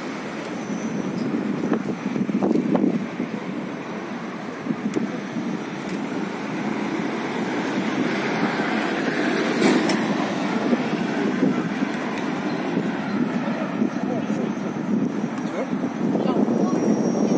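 Outdoor city street ambience: a steady noise of road traffic and wind on the microphone, with indistinct voices.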